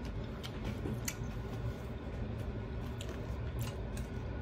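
A box full of tarot card decks being handled and lifted: several faint light clicks and soft rustles, over a steady low room hum.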